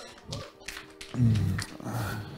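A man's breathing and a brief low wordless vocal sound about a second in, with a few faint clicks, as the preacher catches his breath between sentences.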